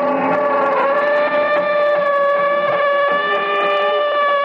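Sound effect of a door creaking slowly open: one long, steady, high-pitched creak.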